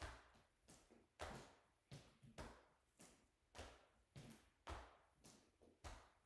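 Soft rhythmic taps of fists on the upper chest just below the collarbones, about two a second, each a short thump with a brushing swish as the arms swing with a standing twist.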